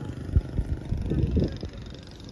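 Low, gusty rumble of wind buffeting the microphone outdoors, with one sharp thump about half a second in and a faint voice under it.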